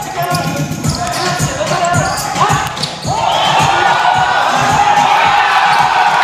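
A basketball dribbled on a hard indoor court, a run of quick bounces under scattered voices. About halfway through, a crowd in the hall breaks into loud cheering and shouting that carries on.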